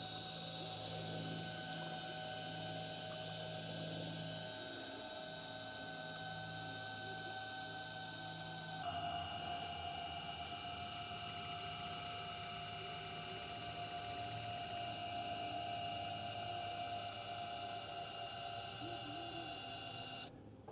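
Steady electric whine of a remote-controlled boat-brake unit, several high tones over a low hum. About nine seconds in the pitch shifts slightly and the whine grows a little stronger.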